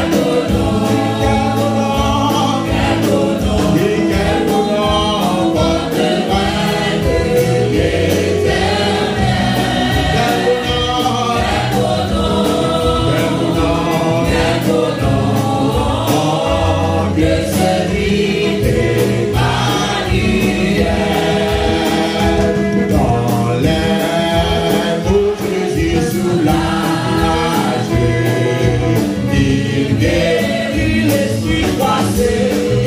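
Live gospel worship song: a man and a small group of women singing together into microphones, backed by a drum kit and band with a steady beat.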